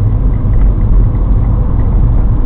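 Steady low rumble of a car driving at steady speed, engine and road noise heard from inside the cabin.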